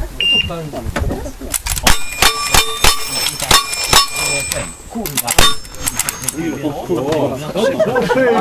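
A shot-timer beep, then a rapid string of rifle shots at close range, about a dozen sharp cracks over some five seconds, fast shooting against the clock.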